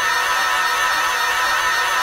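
A large group of cartoon characters screaming together: a loud, dense mass of many voices, each wavering in pitch, held without a break.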